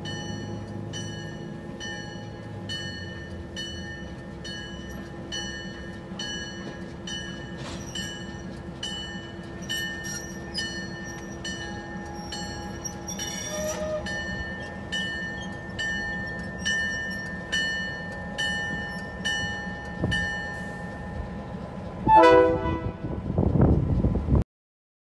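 A railroad grade-crossing bell ringing in a steady rhythm of about two strikes a second as a Great Northern EMD F7 diesel locomotive rolls by with its passenger cars, its engine a low steady drone underneath. Near the end the locomotive's multi-tone horn sounds loudly.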